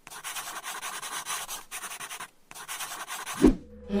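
Pencil scratching on paper, writing in three quick stretches with brief pauses between them. Near the end comes one short low thud.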